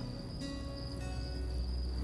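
Steady high-pitched chirring of crickets over a low sustained drone.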